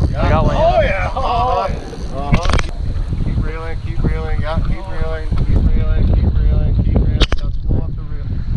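Wind buffeting the camera microphone as a steady low rumble, under indistinct talking, with two sharp clicks, one about two seconds in and one near the end.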